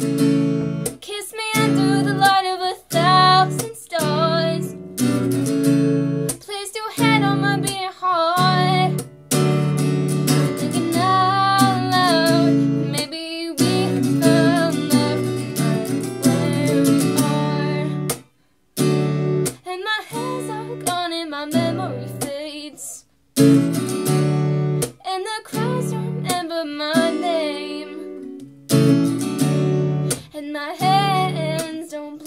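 A woman singing over a strummed acoustic guitar, with two very brief breaks in the sound about two thirds of the way through.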